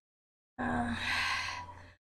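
A woman's breathy exhalation, like a sigh, lasting just over a second. It starts about half a second in with a brief voiced onset and fades out.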